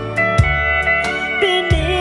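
Live country band: a pedal steel guitar plays a sliding, sustained melody over electric guitar, bass notes and a light beat.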